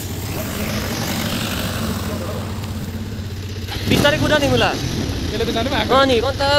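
A motorcycle engine running steadily while riding, a low even hum. About four seconds in, a person's voice comes over it.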